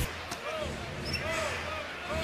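Live basketball game sound: a ball being dribbled on the hardwood court over the steady murmur of the arena crowd, with a few faint rising-and-falling squeaks.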